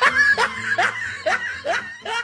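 A person laughing in a quick run of about five short bursts, a little more than two a second.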